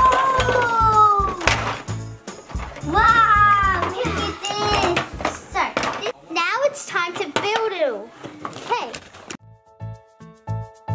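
Background music with a steady beat, with children's high voices calling out in long rising and falling sounds over it. The voices stop shortly before the end, leaving the music alone.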